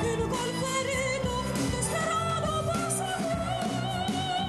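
A woman sings with a rock band, holding long notes with a wide vibrato and sliding up into phrases, over bass guitar and drums.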